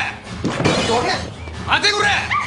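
A crash of something breaking, like glass, about half a second in, followed near the end by a man shouting in Japanese.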